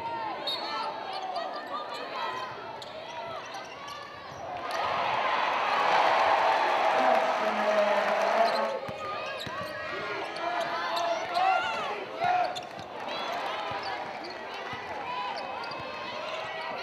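Live basketball court sound: a ball bouncing on the hardwood, many short squeaks of sneakers, and voices of players and crowd in the arena. The crowd noise swells louder from about five to nine seconds in.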